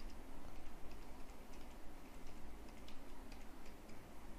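Faint, irregular clicks of computer keys being typed, over a steady low hum and hiss.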